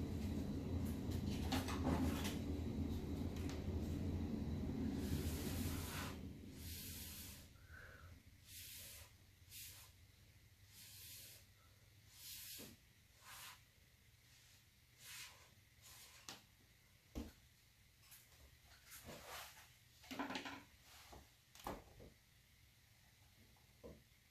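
A low steady hum that cuts off about six seconds in, then faint, scattered rustles and soft wipes as gloved hands and paper towels handle a panel covered in wet acrylic paint.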